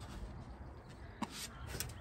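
A big plywood board being handled, with one light knock about a second in and a few faint clicks near the end, over a low steady rumble.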